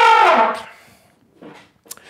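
A trumpet's last held note slides down in pitch and dies away within about half a second, ending the phrase. A faint small sound follows near the end.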